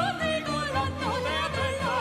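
A woman singing operatically with a wide vibrato, over an orchestra's accompaniment.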